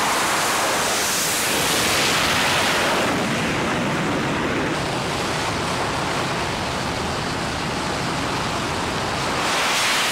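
F/A-18 Super Hornet jet engines running at full power on a carrier's steam catapult: a loud, steady rush of noise. It swells near the end as a jet is launched.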